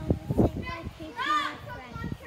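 Children's voices: a young girl speaking close by, with other children's voices in the background and one high-pitched child's call a little over a second in.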